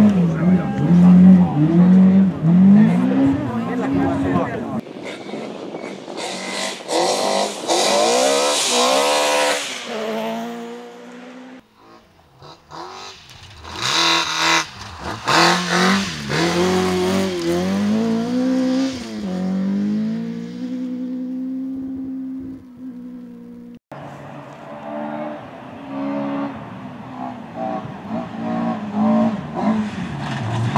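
Volkswagen Polo rally car's engine revving hard on a gravel stage, its pitch repeatedly climbing and dropping as it shifts gears and lifts for corners, in several separate passes.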